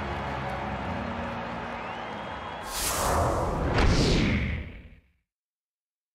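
Stadium crowd cheering, then two loud whoosh transition effects, the second sweeping down in pitch, before the sound cuts off to silence about five seconds in.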